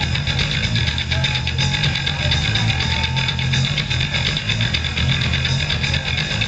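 Heavy metal band playing live: distorted electric guitars and bass guitar over a steady drum beat, continuous and loud.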